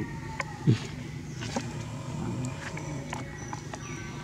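Outdoor background with a steady low rumble, a few faint light clicks, and one brief low thump about three-quarters of a second in.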